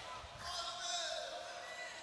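A pause in a man's speech in a large hall: a faint, distant voice and the hall's room sound under a low hiss.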